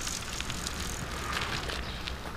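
Bicycles passing on a wet street: light clicking and a brief tyre hiss a little past halfway, over a steady low street rumble.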